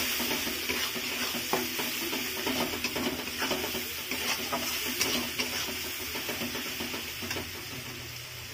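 Onion and ground-spice masala sizzling in hot oil in a metal kadai while a spatula stirs and scrapes it, with many short scraping clicks over a steady frying hiss; the masala is being sautéed (kosha) after the spice powders went in.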